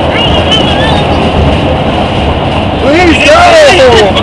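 Loud, steady road and wind noise inside a vehicle travelling at highway speed. Near the end, excited raised voices rise over it.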